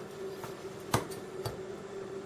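A few light knocks and clicks as cut pieces of smoked pork neck bone are moved by hand on a wooden cutting board, about half a second apart.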